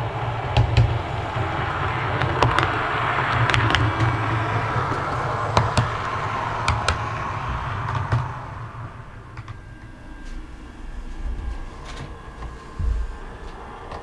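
Bachmann BR Class 121 model railcar running past on the track, its motor whirring steadily with occasional sharp clicks from the wheels. The sound drops away about eight seconds in as the model moves off.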